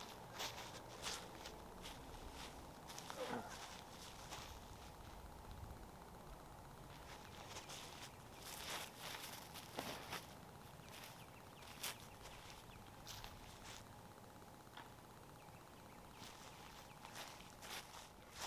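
Faint footsteps and clothing rustle on dry grass as a person takes a run-up and throws a disc, with scattered short clicks over quiet outdoor ambience.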